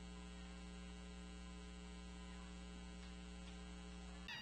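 Faint, steady electrical mains hum: a low tone with a stack of evenly spaced higher overtones.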